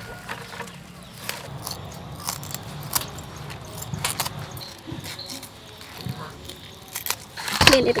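Scattered clicks and light metallic clinks of food preparation: scissors snipping fish and fish pieces tipped from a metal sieve into a steel bowl. A woman's voice is heard briefly near the end.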